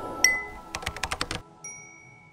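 Logo-animation sound effects: a bright high chime, then a quick run of sharp typing-like clicks, then a second high chime that rings on and fades, over the dying tail of the intro music.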